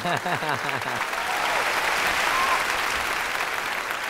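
Studio audience applauding steadily, with a person laughing over the first second.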